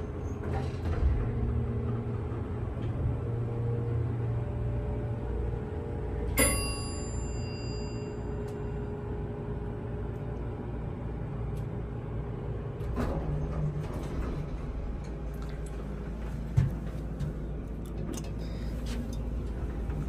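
Ride in a 1984 Dover hydraulic elevator car: a steady low hum of the running elevator throughout, with a single ringing metallic chime about six seconds in. Around thirteen seconds in there is a brief louder stir, as of the car doors moving.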